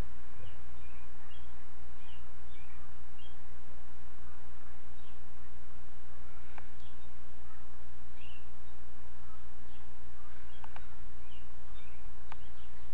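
Steady low electrical hum and hiss from a computer microphone, with faint bird chirps scattered throughout and a couple of sharp clicks from a computer mouse.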